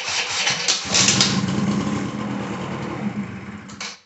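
Small two-stroke engine of a 2004 Can-Am DS 90 ATV being started on its battery, catching about a second in, then running and revved up to about clutch-engagement speed before stopping abruptly near the end.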